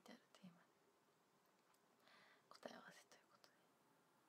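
A woman's quiet voice finishing a sentence, then near quiet with a short whisper about two to three seconds in.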